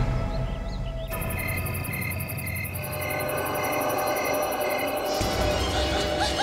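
Dramatic TV background score with no speech. A low rumbling drone runs under sustained held tones. About a second in, a fast high pulsing pattern and a short repeating beep figure enter.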